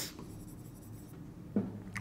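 Chalk scratching and tapping on a blackboard as numbers are written, fairly faint.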